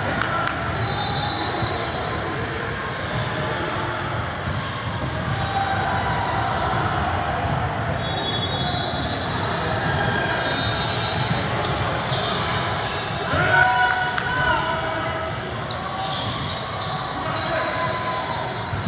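Basketball game sounds on a hardwood gym floor: a ball bouncing, short sneaker squeaks and background voices. About two-thirds of the way through, a voice calls out louder than the rest.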